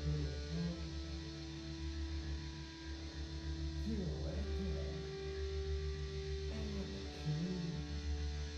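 Live noise-rock electric guitar through an amplifier: a sustained, droning chord over a steady low hum, with sliding notes about halfway through and again near the end.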